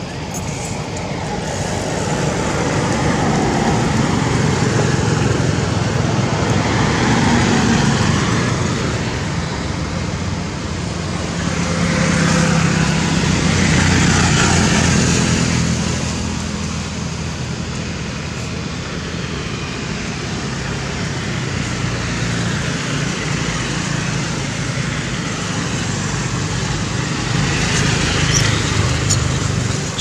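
Steady background noise of road traffic, an engine hum under a wash of road noise, swelling twice as vehicles pass.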